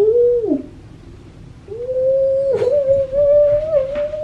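A woman's wordless exclamations of amazement: a short falling "oh" at the start, then a long, slightly wavering held "ooh" from a little before halfway on.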